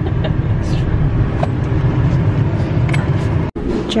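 Steady low road and engine rumble inside a moving pickup's cab. It cuts off suddenly about three and a half seconds in.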